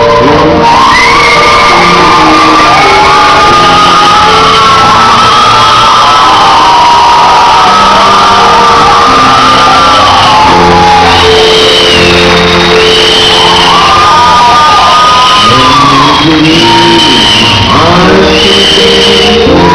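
A live band playing in a large hall while many voices in the crowd shout and sing along over it. It is loud throughout, close to full scale.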